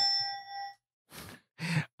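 A bell-like ding sound effect ringing out and fading within the first second, marking a correct quiz answer. A couple of faint breathy noises follow.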